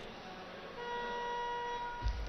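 A steady beeping tone, starting about three-quarters of a second in and lasting about a second, over a faint background murmur of the arena.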